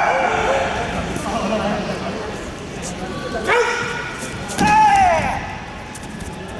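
Short, sharp shouts in a karate kumite bout, the loudest a high call falling in pitch near the end, with sharp knocks just before the shouts.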